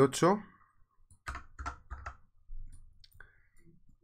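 Computer keyboard and mouse clicking: a handful of short, scattered clicks as a short number is typed into a text box.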